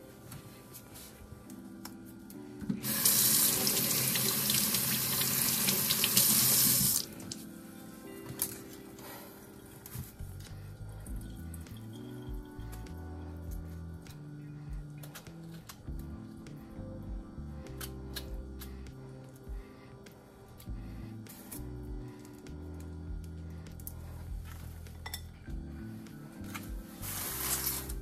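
Kitchen tap running for about four seconds as strawberries are rinsed under it. Afterwards come faint clicks of a knife trimming the strawberries, over quiet background music.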